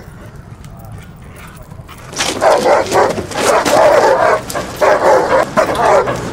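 A dog barking repeatedly and loudly, setting in about two seconds in and carrying on in a long run with a couple of short breaks.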